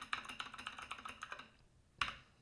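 Faint typing on a computer keyboard: a quick run of keystrokes that stops about one and a half seconds in, with one more keystroke near the end.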